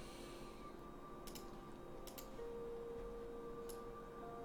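About four faint, scattered computer mouse clicks during 3D modeling work on the computer. Faint steady background tones run underneath.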